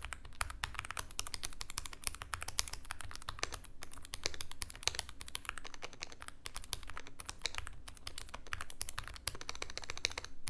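Typing on mechanical key switches pressed into a waffle, most of them bare without keycaps: a fast, continuous run of keystroke clicks. The soft waffle stands in for a keyboard case and plate, with no circuit board under the switches.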